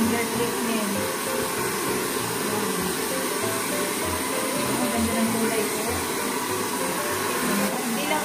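Handheld hair dryer blowing steadily on wet hair, with background music's low beat underneath.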